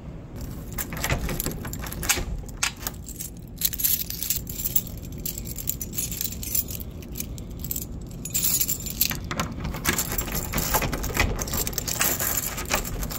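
A bunch of metal keys jangling, a run of quick, bright clinks that come thickest in the last few seconds as the keys are brought up to a door lock.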